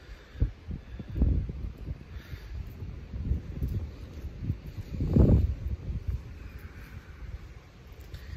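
Wind buffeting the microphone in irregular low gusts, the strongest about five seconds in.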